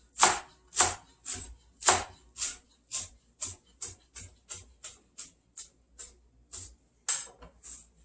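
Chef's knife slicing rolled-up Tuscan (lacinato) kale thinly on a cutting board: a steady run of crisp chops, about two a second, growing softer toward the end.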